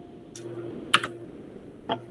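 Three soft, separate clicks of computer keys being pressed, over a faint steady hum.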